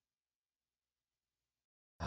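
Near silence: a pause between spoken words, with the sound dropping out to digital silence near the end.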